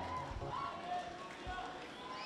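Faint voices of a large congregation murmuring in prayer, heard low in a pause between the preacher's loud phrases.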